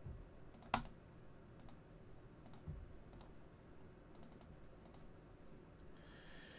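Faint, scattered clicks of a computer keyboard and mouse as a list is copied and pasted. About a dozen soft taps are spread out, with a sharper click just under a second in and a quick cluster about four seconds in.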